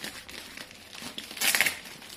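Packaging crinkling and crumpling as a parcel is unwrapped by hand, with a louder burst of crumpling about one and a half seconds in.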